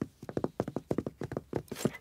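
Cartoon footsteps: small pig characters' trotters tapping quickly across a floor as they walk in, about eight or nine light taps a second.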